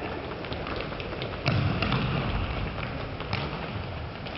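Futsal ball being kicked and played on a sports-hall floor: a sharp kick about one and a half seconds in, another knock a couple of seconds later, with scattered lighter taps and footsteps of players running.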